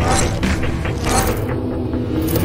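A clicking, mechanical-sounding sound effect, a quick run of short clicks, heard over music.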